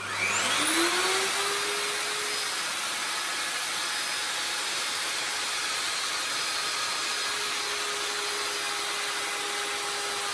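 Electric plunge router starting up, its whine rising over the first second, then running at steady speed as it is slid along a tapered jig to cut the thickness taper of a mahogany bass neck.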